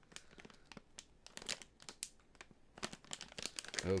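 A sealed resealable popcorn bag crinkling and crackling in the hands, irregularly, as it is tugged at in an unsuccessful attempt to pull it open.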